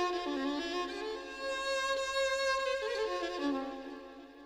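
Violin playing a slow, ornamented melody in Moroccan Andalusian style, softening near the end.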